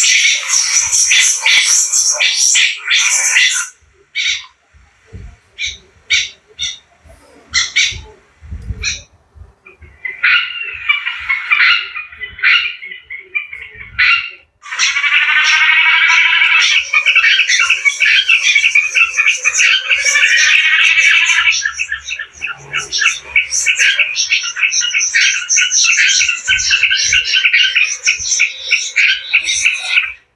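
Recorded bird calls for trapping played loudly through an HP6000 horn tweeter (long-funnel treble horn speaker) on a small amplifier. It gives shrill calls until about four seconds in, then scattered clicks and thumps for several seconds and a short burst of calls. From about fifteen seconds there is a continuous run of rapid repeated calls.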